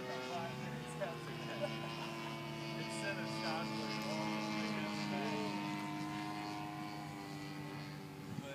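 Gasoline engine of a radio-controlled Pitts Special model biplane in flight, a steady drone whose pitch drifts slightly.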